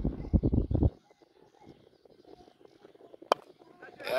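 A second of low rumbling noise, then near quiet, broken about three seconds in by one sharp crack of a cricket bat striking a leather ball: a lofted shot that goes for six.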